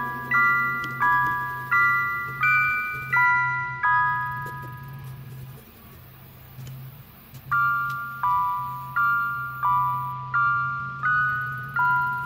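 Background music of bell-like mallet chords, struck about once every 0.7 seconds and each ringing away, with a pause of about three seconds in the middle, over a steady low hum.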